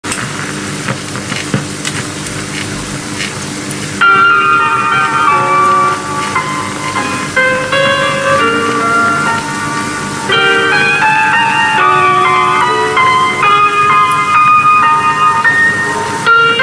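A 35mm print's optical soundtrack played on a Steenbeck editing desk: for about four seconds a steady hiss and hum with scattered clicks. Then, about four seconds in, the trailer's music starts loudly, a melody of clear held notes changing about every half second.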